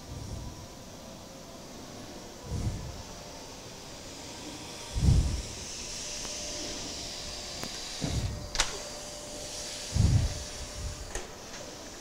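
A canister vacuum cleaner running: a high hissing whine that swells through the middle and then fades. A few dull low thumps come and go throughout.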